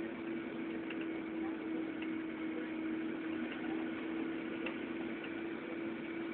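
Steady mechanical hum holding one constant low tone, with a few faint clicks.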